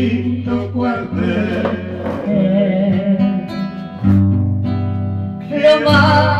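Acoustic guitar played with plucked melody and bass notes between sung lines. A woman's singing voice comes in again near the end.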